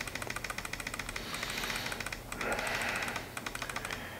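Rapid, even run of small plastic clicks, about a dozen a second, from a computer mouse scroll wheel being spun to move through a row of photos. A brief soft rush of noise comes about halfway through.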